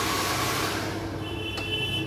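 Handheld hair dryer running steadily: a rush of air over a low motor hum, with a faint high whine joining about a second in.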